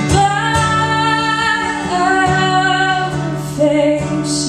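A woman singing long held notes that step down in pitch, with no clear words, over a strummed acoustic guitar.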